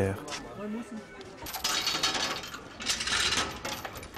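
Heavy steel chain rattling and clinking as it is hauled by hand through a metal guide on a hand-pulled river ferry, in two bursts, the first about one and a half seconds in and a shorter one about three seconds in.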